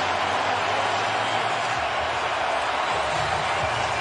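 Steady arena crowd noise: an even wash of cheering with no distinct voices standing out.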